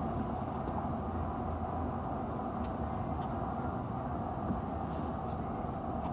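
Steady city background noise: a low, even rumble of distant traffic.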